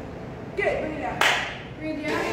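A short break in the workout music: a brief voice and then a single sharp clap-like burst a little over a second in, fading quickly, before the music comes back in.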